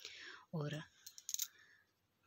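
A quick cluster of light, sharp clicks about a second in, just after a single spoken word.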